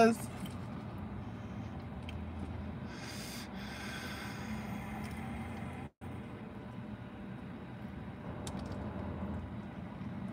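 Quiet, steady low background hum with faint breathing and mouth sounds of eating. A short hiss-like rustle comes about three seconds in, and the sound cuts out completely for a moment near the middle.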